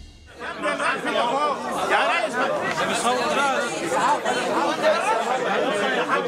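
Several people talking at once, their voices overlapping in steady chatter.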